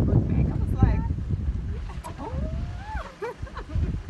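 Wind rumbling on the phone's microphone, easing about halfway through, with a few short, faint voice sounds over it and a longer rising-and-falling vocal sound near the end.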